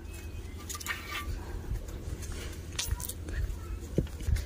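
A few scattered light metallic clinks and knocks from a metal pan and loose brick rubble being handled, over a steady low rumble.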